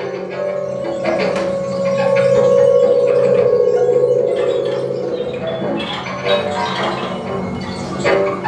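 Live improvised music from a trio of trumpet, double bass and electronics: a long wavering held tone over a steady low drone, giving way after about five seconds to scattered short pitched notes and clicks.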